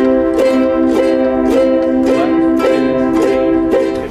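Ukulele strummed in a steady down-up rhythm, about three to four strums a second, on one chord held throughout.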